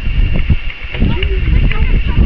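Distant calls and shouts of young footballers and people around the pitch, scattered short cries rather than steady talk, over a heavy rumble of wind on the microphone.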